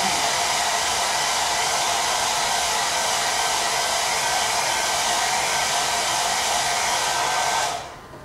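Handheld hair dryer running steadily, a constant rush of air, switched off just before the end.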